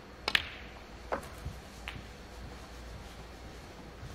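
A snooker cue tip strikes the cue ball with a sharp click, followed by sharper clacks of snooker balls colliding about a second and about a second and a half later.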